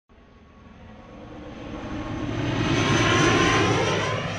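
Airplane passing overhead: engine noise with a steady high whine swells to a peak about three seconds in and then begins to fade.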